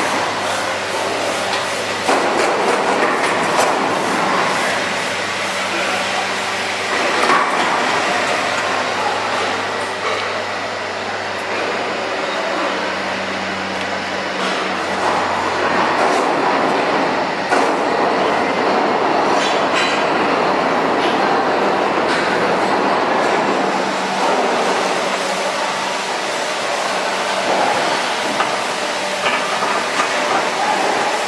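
Steady machinery hum and rumble, with a low electric hum under it and scattered metallic clicks and knocks.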